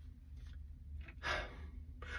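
A man breathing audibly once, a short sigh about a second in, over a faint steady low hum.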